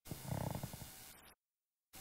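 A man's brief, soft, low rasping throat sound that fades out after about a second.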